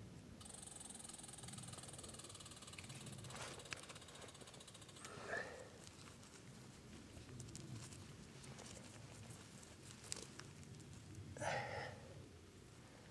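Faint scraping and rustling of fingers digging in loose soil among roots, with a few sharp clicks. Twice, at about five seconds and again near the end, there is a short, louder voice-like sound.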